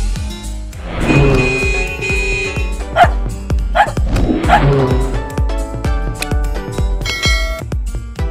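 Upbeat music with a steady beat, with a dog barking a few times over it, most sharply about three and four seconds in.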